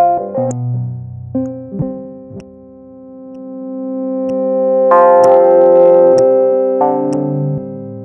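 SEELE Abacus software synthesizer, which uses waveshaping for FM-like tones, playing sustained pitched notes that change every second or so. One note swells up slowly to its loudest about five seconds in, then gives way to new notes near the end.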